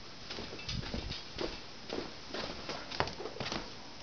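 Footsteps with rustling of a handheld camera: a string of soft, uneven thuds, about three a second.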